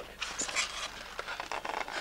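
Cardboard packaging rustling and scraping in short, irregular scuffs as a white insert tray holding a small gadget is slid out of its carton.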